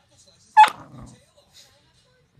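Beagle giving one sharp bark about half a second in, a warning while guarding the TV remote, tailing off with a brief lower rumble.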